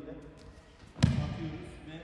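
A judo student thrown onto the tatami mat lands with one loud thud about a second in, echoing in the hall.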